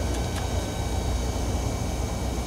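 Steady low background rumble with a faint steady hum, and two faint light ticks in the first half second.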